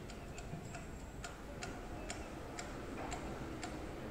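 Faint, regular sharp ticking, about two ticks a second.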